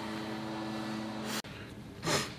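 Steady room hum from ventilation with a low constant tone. It cuts off suddenly about a second and a half in, giving way to a quieter, different background hiss.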